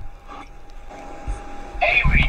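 Low background noise over a video call on a phone, with a faint steady tone, a click right at the start, and a voice starting near the end.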